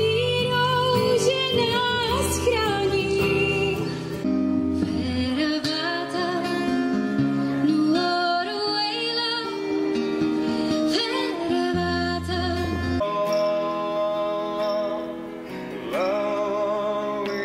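A woman singing to her own strummed acoustic guitar. The song cuts abruptly to another about four seconds in, and again about thirteen seconds in.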